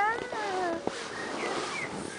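A young child's high voice making a drawn-out wordless sound that slides down in pitch over the first second, followed by softer voice sounds, with a light tap about a second in.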